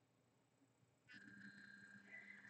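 Near silence: room tone, with a faint steady hum that comes in about a second in.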